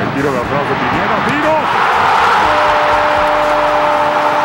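Stadium crowd roaring at a goal, swelling louder about halfway through, with an excited TV commentator calling over it and ending on a long held note.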